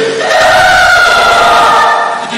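A short voice clip played as 4,096 overlapping copies at once, the copies blurring into a loud, dense chorus-like drone of held pitches. The clip restarts about every two seconds, with a brief dip at each restart.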